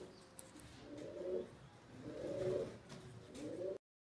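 Domestic pigeon cooing softly: three short low coos about a second apart, with the sound cutting off suddenly near the end.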